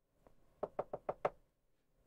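Five quick knocks on a door, evenly spaced, starting about half a second in.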